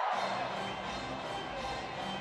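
Music playing over an arena's loudspeakers with a crowd cheering, the celebration of a home-team goal at a hockey game.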